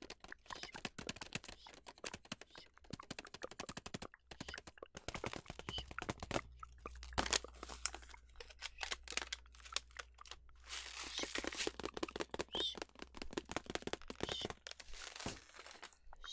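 Clear plastic packaging crinkling and crackling as fingers squeeze and handle it close to the microphone, in a dense run of irregular crackles that grows busier in the second half.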